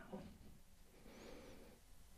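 Near silence: quiet room tone, with a faint click at the very start and a soft faint hiss about a second in.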